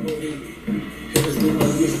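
Rap freestyle playing back: a hip-hop beat with a rapper's voice, and a sharp hit about a second in.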